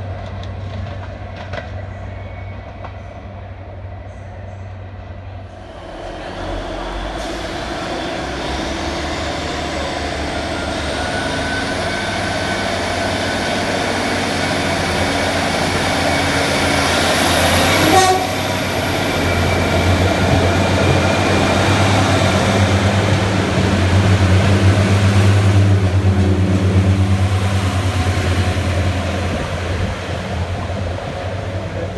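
Diesel passenger trains at a station platform. An approaching train grows louder from about six seconds in, with a faint rising whine. A sharp knock comes about eighteen seconds in, then a loud steady engine drone as a diesel multiple unit passes close alongside, fading near the end.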